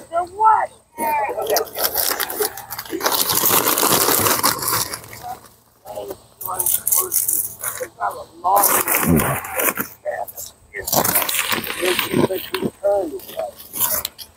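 Plastic snack-bag crinkling and the crackle of corn chips being handled and crushed by hand, in several noisy stretches.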